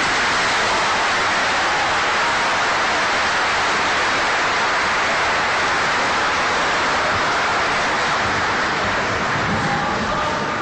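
A steady, even rushing noise at a constant level, easing off near the end.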